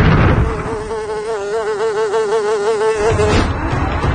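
Fading noise of a loud blast at the start, then an insect-like buzzing tone that wavers up and down about five times a second for roughly three seconds before cutting off.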